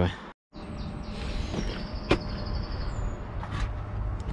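Steady outdoor background noise with a single sharp click about two seconds in and a faint, thin, high pulsed tone in the middle.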